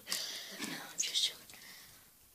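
A young person whispering close to the microphone: breathy hisses and sharp 's'-like sounds without a spoken tone, fading to faint room tone about one and a half seconds in.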